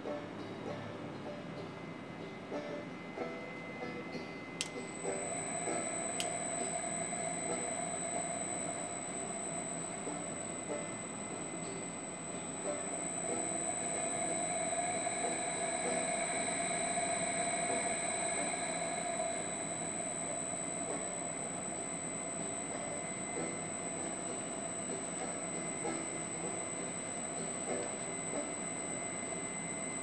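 Three-phase AC motor running on a Reliance Electric SP500 inverter drive: a steady electronic whine, several high tones over a mid-range hum. Two sharp clicks come about five and six seconds in, after which a higher whine joins, and the sound swells for several seconds in the middle.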